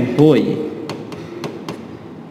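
Pen tip tapping and clicking on the screen of an interactive display board while writing: several short, sharp taps in the second half.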